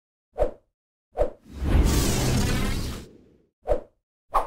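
Whoosh sound effects for animated title logos: two short swishes, then a longer whoosh with a low rumble lasting about two seconds, then another short swish near the end.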